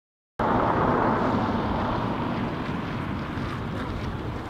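Wind buffeting the camera microphone: a steady rushing noise with an uneven low rumble, loudest in the first two seconds and then easing off slightly.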